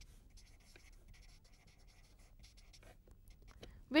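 Marker pen writing on paper: a run of faint, short scratching strokes as words are written out.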